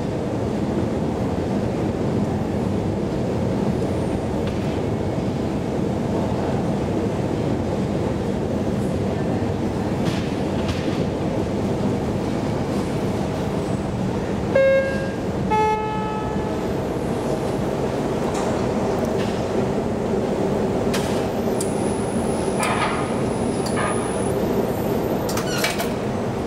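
KONE inclined traction elevator cab in motion: a steady rumbling ride noise. About halfway through, a two-note chime sounds, high then a little lower.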